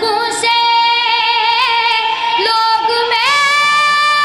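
A young boy's high voice singing a lament, unaccompanied, through a microphone and loudspeakers. He holds long notes with a wavering vibrato, rising into one long held note about three seconds in.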